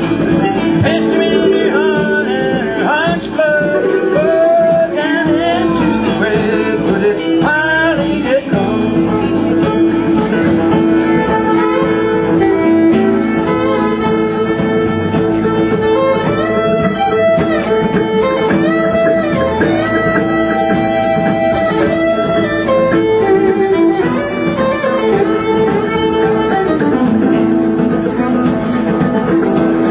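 Fiddle playing an instrumental break with sliding notes over a steady plucked string accompaniment, in an old-time mountain ballad tune.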